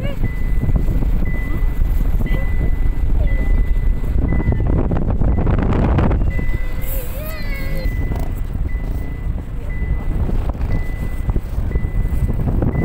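Heavy wind buffeting on the microphone mixed with the running of a quad bike's engine, with a faint high beep repeating on and off. A voice calls out briefly about halfway through.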